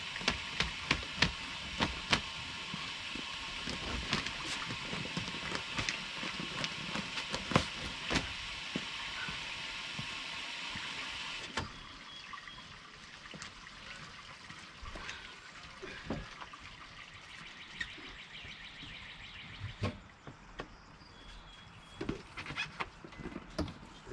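Water gurgling and crackling through an RV sewer hose into a dump-station drain as the black tank is rinsed out with a garden hose. The flow noise drops off suddenly about halfway through, leaving quieter scattered knocks from the hoses being handled.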